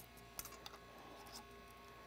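Near silence with a few faint clicks from a metal canning-jar top being fitted and screwed onto a glass mason jar.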